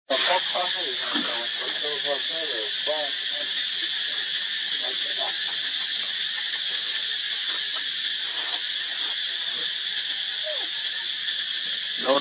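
A steady, even, high-pitched insect chorus, with short pitched vocal calls in the first three seconds and a few more later.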